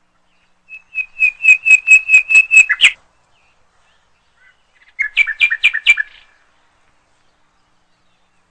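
A songbird singing two phrases. The first is a run of about nine clear, repeated notes, about four a second, ending on a falling note. After a pause of about two seconds comes a shorter, slightly lower run of about five notes.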